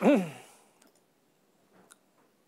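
A man's voice trailing off in a short hum or sigh that falls in pitch, then near silence with a few faint clicks, the last one just as the slide changes.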